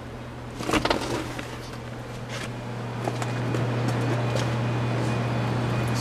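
A steady low machine hum that grows louder, with a few knocks and rustling handling noises about a second in and again a little after two seconds.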